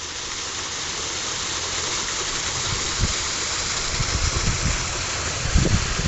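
Water gushing and splashing onto rocks at a concrete culvert outlet: a steady rushing hiss. Some low rumbling comes in near the end.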